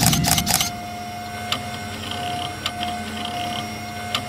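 Logo-reveal sound effects. A cluster of sharp clicks and hits comes right at the start as a whoosh dies away, then a quieter steady hum with a held tone, marked by single soft ticks a little more than once a second, like a clock.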